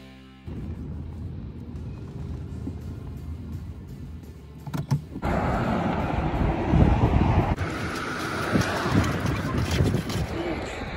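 Music ends about half a second in, giving way to the low, steady rumble of road and engine noise inside a moving car. About five seconds in it changes abruptly to louder, rougher outdoor noise with more hiss.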